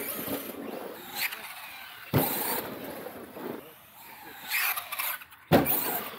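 Brushless electric RC truck driving over dirt jumps: bursts of motor and drivetrain whine as the throttle is worked, with two sharp impacts as the truck hits the ground, about two seconds in and again shortly before the end.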